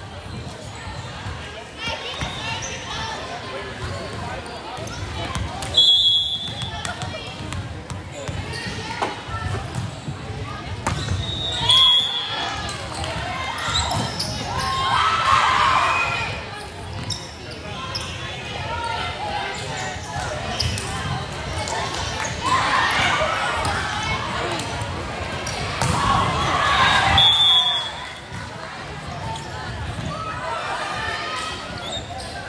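Indoor volleyball match in a gym: a referee's whistle blows three short blasts, about six seconds in, at twelve seconds and near the end, marking serves and the ends of rallies. Between them come shouts and cheers from players and spectators, with the ball bouncing on the hardwood floor.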